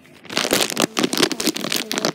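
Fleecy towel rubbing against the phone's microphone: a loud, dense rustling and crackling that starts a moment in.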